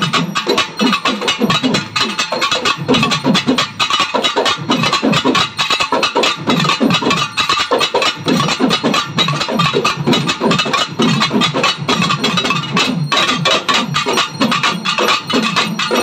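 A group of pambai drums (paired Tamil cylindrical drums struck with sticks) played together in a fast, dense, unbroken rhythm.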